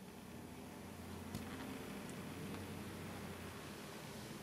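Faint room tone: a steady hiss with a low hum underneath, and one small click about a second and a half in.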